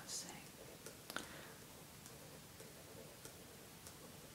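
Quiet pause in a whispered talk: a faint breath just after the start, then a single soft click about a second in and a few fainter ticks over low room tone.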